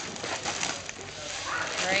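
Voices chattering in a busy room, with short rustles and light knocks as a plastic-wrapped cookie package is handled and dropped into a cardboard box.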